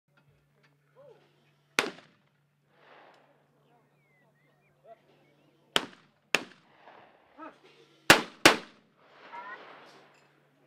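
Shotguns firing at clay targets: one shot about two seconds in, then two quick pairs of shots, each pair about half a second apart, the last pair the loudest. Each shot rings briefly, and faint voices are heard between them.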